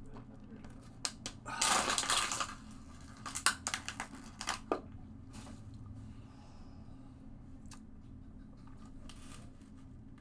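Plastic water bottle being handled: a loud crinkling burst about two seconds in, then a run of sharp clicks and crackles over the next few seconds, after which only faint ticks remain.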